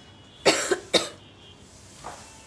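A woman coughing twice, short sharp coughs about half a second apart, starting about half a second in.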